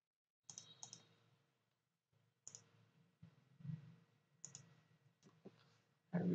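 A few faint computer mouse clicks, some in quick pairs, with a soft low bump about three and a half seconds in, over otherwise near-silent room tone.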